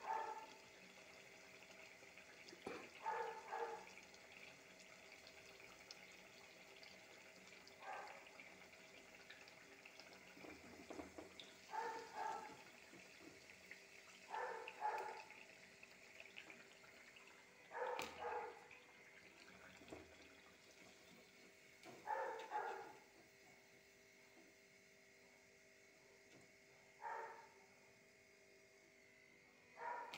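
Faint steady sizzle of fritters deep-frying in oil, with a dog barking off in the distance every few seconds, often two barks at a time.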